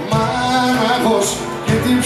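Live Pontic Greek folk music from a band, with a singer's voice gliding over sustained instrumental notes.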